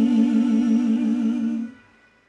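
A solo singing voice holding the final note of the song, a long sustained vowel with an even vibrato, fading out and stopping about 1.7 seconds in.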